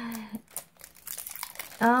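Packaging crinkling as it is handled: a run of small, light crackles through the middle, following the end of a voiced sigh.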